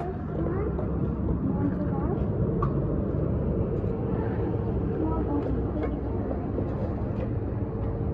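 A steady low mechanical rumble with a constant hum running underneath. Faint, scattered voices sound over it.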